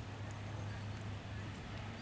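Hoofbeats of a horse moving across a sand arena, soft and steady.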